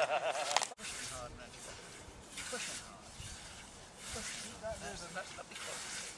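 Scythe blade swishing through long meadow grass in a steady rhythm of repeated cutting strokes.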